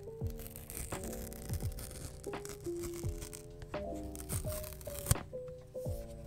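Background music with a steady beat, over the faint tearing of a paper seal on a smartphone box. A sharp click comes about five seconds in.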